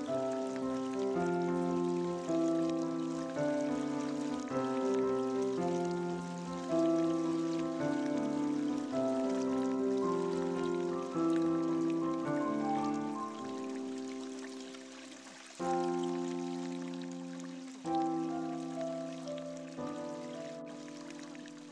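Slow solo piano music, with single notes and chords struck about once a second and each fading away. Fresh chords come in twice in the last third. A steady hiss of running water sits underneath.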